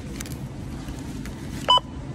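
Datalogic Magellan self-checkout barcode scanner giving one short beep near the end as an item's barcode is read, over a steady low hum and a few faint clicks of pouches being handled.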